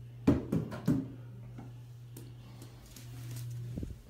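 A small homemade polymer bouncy ball knocking on a hard bathroom counter: three quick soft knocks in the first second and another faint one near the end. A steady low hum runs underneath.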